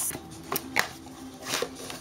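A cardboard mailer box being handled: a few light clicks and scuffs of cardboard against hands.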